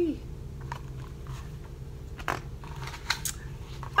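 Pages of a picture book being handled and turned: a few short, separate paper crackles and rustles over a steady low room hum.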